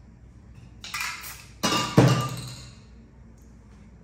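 A short hiss, then a sharp metallic clink about two seconds in that rings out for about a second.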